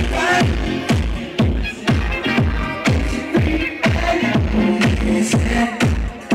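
Loud deep/tech house dance music from a live set played over a PA system, with a steady four-on-the-floor kick drum about two beats a second under synth chords and chopped vocal snippets.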